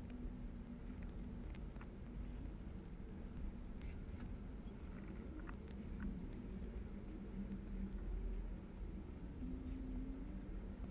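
Faint clicks and scrapes of a precision Phillips screwdriver turning tiny motor-mount screws into a brushless micro motor on a plastic frame, a few light ticks scattered through, over a low steady hum.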